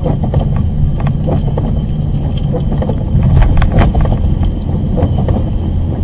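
Steady low rumble of a car driving on a wet road, heard from inside the car through a dashcam, with many short, sharp ticks scattered through it.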